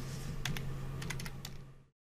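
A quick run of keystrokes on a computer keyboard, typing in a chart symbol, over a low steady hum. The sound cuts to dead silence just before the end.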